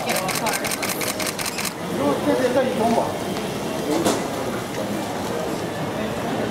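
A camera shutter firing in a rapid burst, about a dozen clicks at roughly seven a second, stopping after under two seconds. Voices follow, with a single sharp click about four seconds in.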